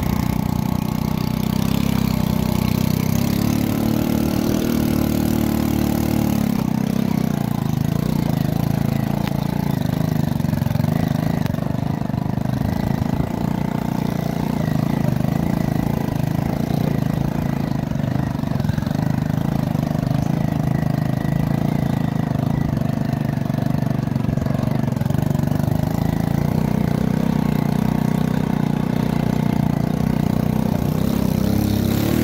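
Engine of the vehicle carrying the camera, running steadily as it drives; about three seconds in its pitch rises for a few seconds, then drops back to a steady run.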